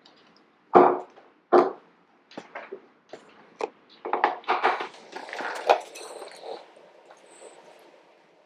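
Plastic Loc-Line modular hose segments being forced together by hand without snapping in. Two loud short sounds come about a second in, followed by a run of sharp plastic clicks and rattles that fades near the end.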